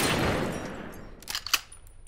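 A gunshot's echoing tail fading away over about a second, the shot having been fired just before, followed by two short sharp clicks about a second and a half in.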